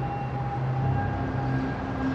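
Background music: a sustained synth-pad chord of held low and mid notes, which moves to a new chord about halfway through.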